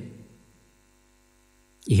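Faint, steady electrical mains hum heard in a pause between a man's spoken phrases. His voice trails off at the start and comes back just before the end.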